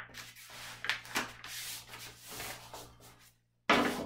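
A large sheet of paper being folded corner to edge by hand, the crease pressed and rubbed flat on a desk: irregular rubbing and rustling with a few sharper crinkles. It cuts off suddenly near the end.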